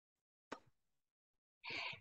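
Near silence in a pause of a recorded voice-over: a single short click about half a second in, then a faint breath just before the voice resumes.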